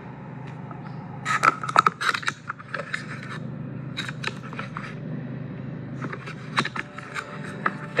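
Steady low hum of the car's idling engine heard inside the cabin. Over it come scattered clicks and scrapes, thickest about a second in and tapering off toward the end.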